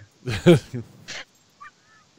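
Two men laughing: a short burst of laughter with a rising pitch about half a second in, then a breathy exhale and a faint, brief high squeak near the end.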